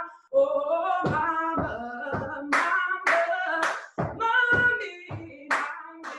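A woman singing unaccompanied, keeping time with sharp percussive hits about every half second: hard-soled shoes stamping on a wooden stomp box, with hand claps.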